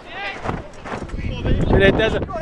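Shouts and calls from football players across the pitch, the loudest near the end, with wind rumbling on the microphone.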